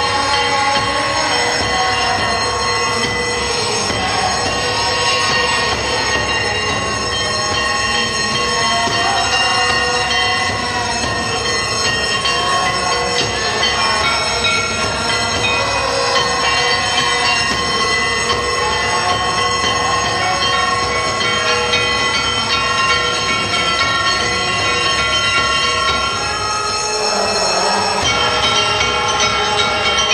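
Temple bells and gongs ringing loudly and continuously for an aarti, a dense metallic clanging with steady ringing tones that does not let up.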